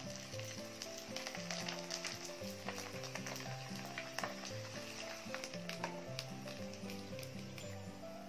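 Spring rolls sizzling in hot oil in a wok, a steady frying hiss with many small crackles and pops, over background music.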